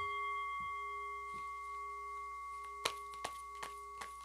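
A struck chime rings out suddenly and sustains, several tones sounding together and fading slowly. In the second half, a few sharp clicks come as tarot cards are handled.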